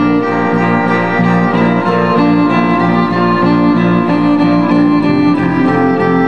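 Live folk band playing: a fiddle carries the melody over electric guitar and bass guitar, at a steady loudness.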